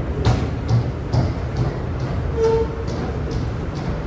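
Footsteps in an underground pedestrian passage, about two steps a second, over a steady hum, with a short steady tone in the middle.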